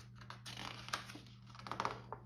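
Paper pages of a printed photo book being handled and turned by hand: short rustles and clicks of the paper, with a louder flurry near the end as a page is flipped over.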